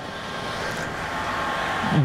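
TrafficJet wide-format inkjet printer running: a steady whirring rush of machine noise that slowly grows louder.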